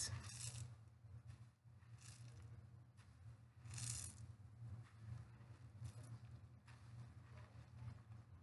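Faint wet squishing and dripping as soaked synthetic crochet hair in a mesh net is squeezed out by hand over a sink of soapy water, in a few soft swishes, over a low steady hum.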